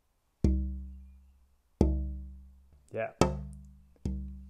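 A granadillo (Platymiscium dimorphandrum) guitar tonewood plate tapped three times in a luthier's tap test, each tap ringing with low, sustained tones that die away slowly.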